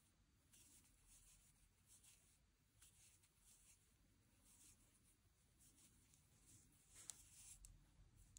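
Near silence, with faint, irregular soft rustles of a crochet hook drawing cotton yarn through stitches, a little louder about seven seconds in.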